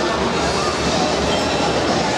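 Steady hubbub of a crowded tournament hall: many voices overlapping into a continuous din, with no single sound standing out.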